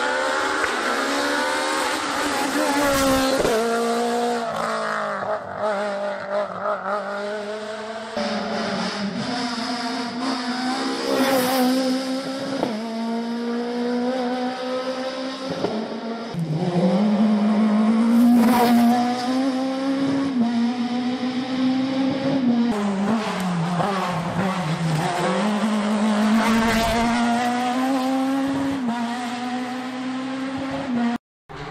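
Rally car engines driven hard as cars pass one after another, the note climbing and dropping sharply through gearshifts and lifts. There are a few brief sharp bursts along the way.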